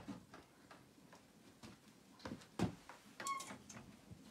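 Faint, scattered knocks and taps of kitchenware being handled at a stove as a lid is set onto a pot, with a short ringing metallic clink about three seconds in.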